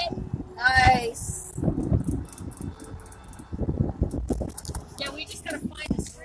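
People's voices inside a moving car: a loud drawn-out vocal sound about a second in and a few unclear words near the end, over low rumble from the car.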